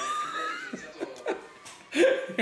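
A man laughing: a high-pitched laugh at the start that trails off into short, quieter chuckles.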